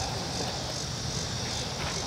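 Outdoor chorus of insects singing, the high buzz swelling in even pulses about two or three times a second.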